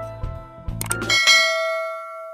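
Background music with a bass line stops a little past halfway, as two quick clicks sound, followed by a bright bell ding that rings on and fades: a subscribe-button animation's click and notification-bell sound effects.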